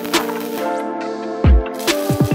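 Background electronic music: held chords with a deep kick-drum hit about halfway through and a quick run of hits near the end.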